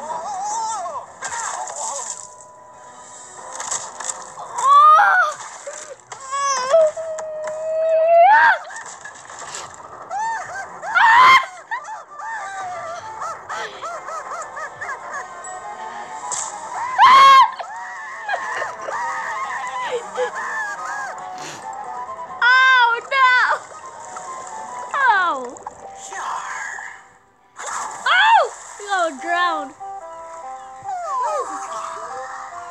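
Cartoon soundtrack: background music with high-pitched, squeaky character voices and cries that swoop up and down in pitch.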